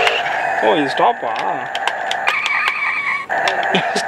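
Electronic sound effects from a toy RC car's steering-wheel remote control as its buttons are pressed: short clicks, pitched sounds that rise and fall, and a steady electronic tone for about a second near the middle.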